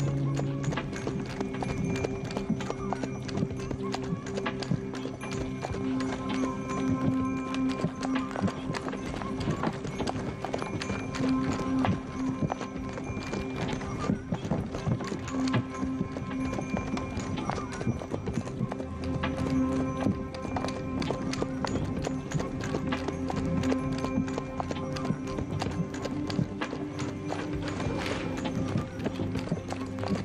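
Hoofbeats of a horse trotting in harness, pulling a wooden sleigh over snow, under background music with long held notes.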